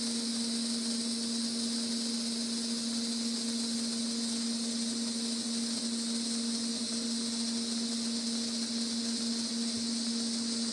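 TIG welding arc burning steadily on a tube joint turning on a rotary positioner: an even hiss with a constant low hum under it, unbroken throughout.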